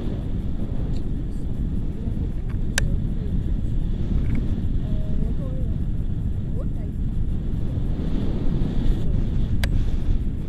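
Steady wind rushing over the camera microphone in flight under a tandem paraglider, with two sharp clicks, one about three seconds in and one near the end.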